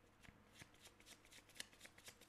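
Faint tarot deck being shuffled in hand: a quick, irregular run of soft card flicks.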